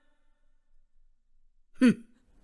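A quiet pause, then near the end one brief vocal sound from a woman, falling steeply in pitch, such as a sigh or short exclamation.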